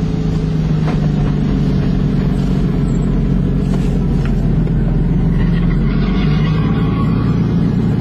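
Car engine running loudly at fairly steady revs, heard from inside the cabin, with a small change in pitch about six seconds in.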